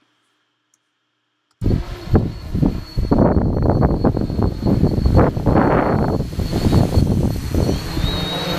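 Wind buffeting an outdoor microphone in gusts, a loud rumble that starts suddenly about a second and a half in, after near silence. A faint steady high whine from the multirotor's motors runs above it.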